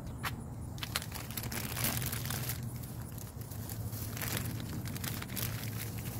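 Clear plastic bag crinkling in irregular crackles and rustles as it is handled.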